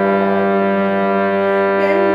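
Harmonium holding a steady, reedy chord of several notes between sung phrases of a Carnatic bhajan.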